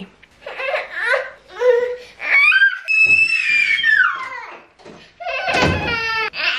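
A one-year-old boy crying and fussing while being carried in a baby carrier: several short cries, then one long, high wail about two seconds in. He is unhappy at being worn in the carrier.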